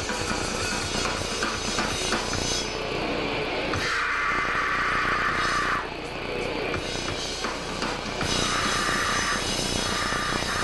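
Grindcore band playing live: a drum kit and distorted guitars in a loud, dense wall of sound. The sound dips slightly about six seconds in.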